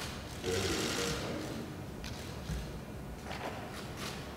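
Press cameras' shutters clicking in a quick burst about half a second in, with a shorter burst near the end, over low room noise in a large hall.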